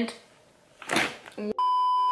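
A steady electronic test-tone beep, a pure tone around 1 kHz. It starts suddenly about one and a half seconds in and is held at one level, a TV colour-bars sound effect edited into the video.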